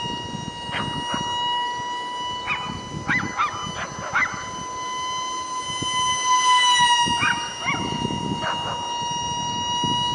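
Small electric ducted fan of a micro RC jet running with a steady high whine that drops slightly in pitch about two thirds of the way through as the throttle eases. Short high yips from an animal come in several clusters over it.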